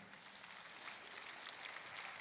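Faint, light applause from the conference audience, an even patter that builds slightly toward the end.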